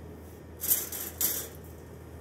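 Kitchen utensils being handled: a short scraping, hissing noise about half a second in, lasting under a second, with two louder moments.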